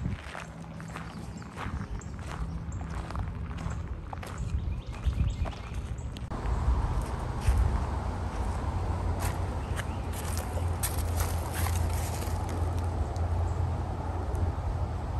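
Footsteps on a leaf-strewn cemetery path, irregular steps and crunches. About six seconds in, a steady low rumble comes in under them.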